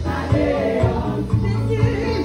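Women's gospel praise team singing together in harmony into microphones, over band accompaniment with a bass line and a steady beat.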